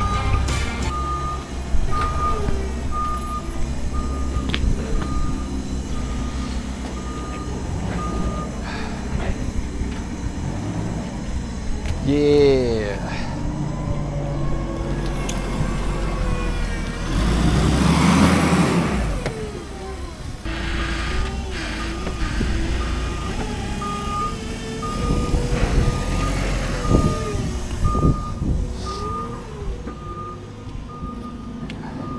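Forklift reversing alarm beeping steadily, a little more than one beep a second, over a running engine; the beeping stops about a third of the way in and starts again near the end. A louder rush of engine noise comes a little past halfway.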